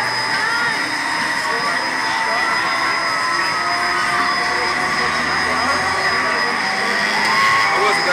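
Steady outdoor amusement-ride din: a continuous background rush with a steady high-pitched hum and faint, distant voices.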